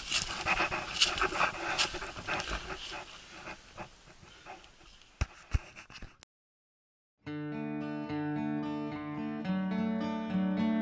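Dry branches and brush scraping, crackling and snapping as a canoe is carried through deadfall on an uncleared portage trail, with many sharp clicks, slowly fading. After a second of dead silence, music begins about seven seconds in.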